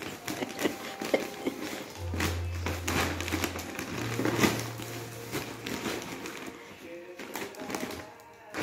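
Christmas wrapping paper crinkling and rustling in quick irregular crackles as a dachshund noses and pulls at a wrapped present, with music playing underneath.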